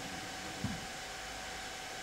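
Steady background hiss of the room and recording during a pause in speech, with one brief faint low sound about half a second in.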